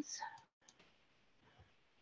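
The tail of a woman's speech fades out, then a single faint computer-mouse click about two-thirds of a second in, as the screen share is stopped. After that there is near silence.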